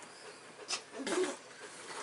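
A cat gives one short, quiet cry about a second in, just after a faint click.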